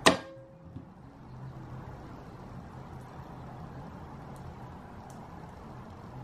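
A single sharp knock with a brief ring as the soap loaf is handled on a wooden-framed wire soap cutter, then a faint click under a second later; after that only a steady low hum of room noise.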